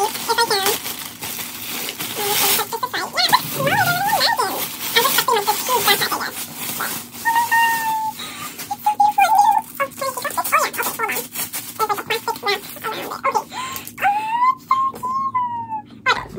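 Plastic wrap crinkling as a mini backpack is unwrapped, with many short, high-pitched calls that rise and fall in pitch over it throughout.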